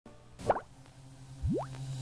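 Two rising 'bloop' pop sound effects of the kind Pop-Up Video uses for its info bubbles: a short, loud one about half a second in, and a longer upward swoop from very low to high near the end. A low steady hum runs underneath.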